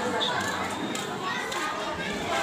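A pause between phrases of a woman's amplified Qur'an recitation: her held note fades at the start, leaving a low murmur of voices, children among them, in the hall until the next phrase begins.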